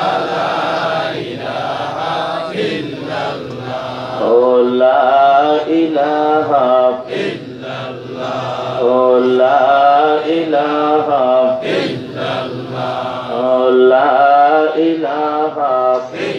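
A man chanting Islamic devotional verses into a microphone, in three long, drawn-out sung phrases with wavering pitch.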